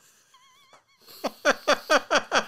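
A man laughing: a faint, wavering high squeak, then about a second in a run of quick, rhythmic laughs, about five a second.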